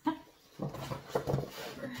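Two people's voices, talking and laughing, with a sudden sharp sound right at the start.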